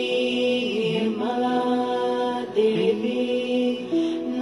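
Meditation music with a voice chanting mantras, sung phrases sliding in pitch over steady held tones.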